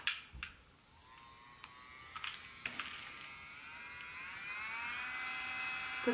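Makartt portable nail drill's handpiece motor spinning up, a quiet whine that rises steadily in pitch as the speed is raised to its top setting of 30. A few sharp clicks come in the first few seconds.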